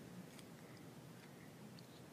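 Near silence: room tone with a few faint soft ticks from the pages of a small paperback book being handled.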